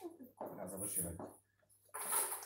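Indistinct low voices talking in a small room for about the first second and a half, then a brief lull.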